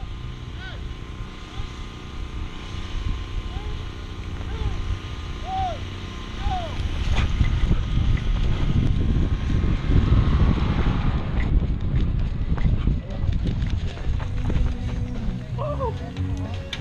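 Wind rumbling on the microphone along with the wearer's own movement while moving across open ground, getting much louder about halfway through. A few faint distant shouts come before that.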